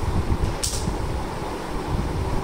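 Steady low room noise with no speech, and a brief hiss about half a second in.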